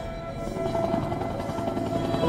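Orchestral music: the ringing tail of a loud orchestral hit dies away, then a held note comes in about half a second in.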